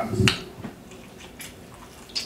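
Eating noises: a short knock with a sharp click right at the start, then a couple of faint clicks, from cutlery or a plate being handled during a meal.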